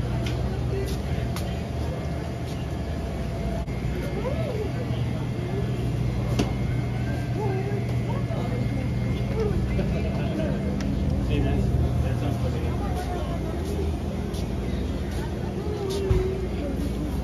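A steady low machine hum that fades out near the end, with people's voices talking indistinctly over it.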